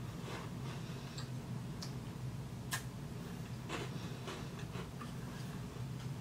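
Small crunches and clicks of a Tim Tam chocolate biscuit being bitten and handled, with one sharper click a little under three seconds in, over a steady low hum.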